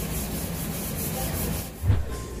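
Rubbing and handling noise on a hand-held phone's microphone as it is moved, with a low thump near the end.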